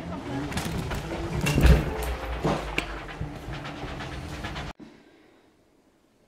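Knocks, rattles and rumble from a small travel mobility scooter rolling through a narrow wooden hut corridor, with the loudest rumble about a second and a half in. The sound cuts off suddenly near the end, leaving quiet room tone.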